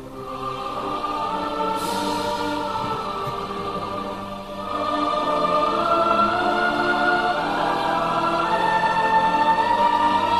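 Slow choral music: a choir singing long held notes, growing louder about halfway through.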